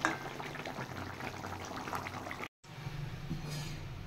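Thick, nearly dry fish curry bubbling and crackling in a pan as a spoon stirs it. The sound cuts off abruptly about two and a half seconds in, and a quieter low steady hum follows.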